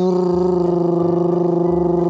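A man's voice holding one long, steady note at an even pitch.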